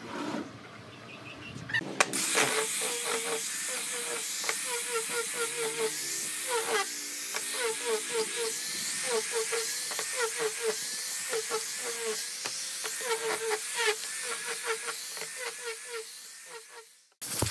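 Angle grinder fitted with a sanding pad starts about two seconds in and runs with a loud hiss, sanding the faces of pine blocks, its tone wavering over and over as the pad is worked across the wood.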